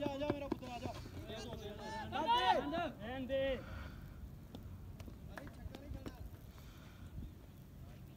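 Voices calling out during the first three and a half seconds, loudest about two and a half seconds in. Then only faint outdoor background noise with a few faint clicks.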